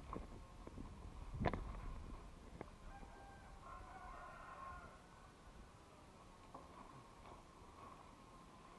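A faint rooster crowing for about two seconds, starting around three seconds in, with a few sharp knocks before it, the loudest about one and a half seconds in.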